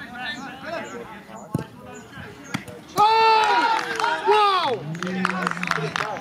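Faint calls and chatter across a football pitch with a couple of sharp thuds of the ball being kicked, then from about halfway loud, long celebrating shouts that rise and fall, several in a row, the kind that greet a goal.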